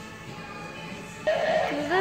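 Halloween animatronic prop playing its recorded soundtrack through its small speaker: spooky music with a voice-like sound effect, quiet at first, then cutting in loudly a little over a second in.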